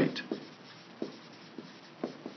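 Dry-erase marker writing on a whiteboard, a few short strokes of the pen tip on the board.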